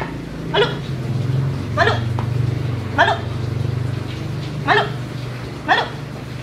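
Shiba Inu barking: about five short, sharp barks a second or so apart, each falling in pitch, over a steady low hum.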